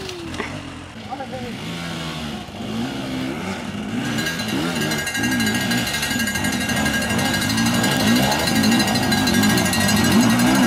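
Enduro dirt bike engines revving up and down, climbing a rocky creek-bed trail; from about four seconds in, more than one bike is running.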